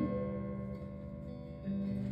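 Acoustic guitar played softly, a held chord ringing out and fading, with a new chord struck near the end.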